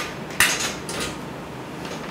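Flip chart easel being handled: a single sharp clack about half a second in as the clamp bar at the top of the pad is worked, followed by softer handling noise.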